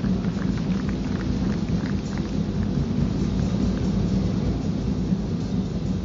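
Audience applauding loudly: many hands clapping in a dense, even patter.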